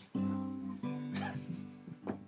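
Acoustic guitar strummed: two chords, one just after the start and another a little under a second in, each ringing on, with a brief higher-pitched sound over them about a second in.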